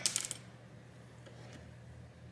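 A quick cluster of small metallic clicks as metal tweezers flick a small metal connector bracket loose inside the tablet, followed by a faint steady hum.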